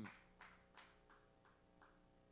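Near silence: faint room tone with a low steady hum and a few soft, faint clicks.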